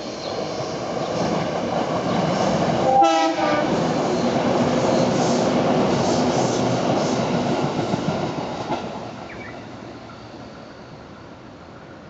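JR Kyushu 415 series electric train passing close by, its wheels and running gear building to a loud clatter that holds for several seconds and then fades as it moves away. A brief horn blast sounds about three seconds in.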